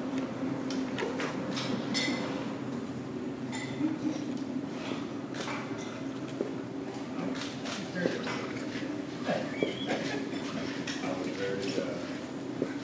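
Indistinct background chatter of several people in a hard-walled room, with scattered short clicks and clatters over a steady low hum.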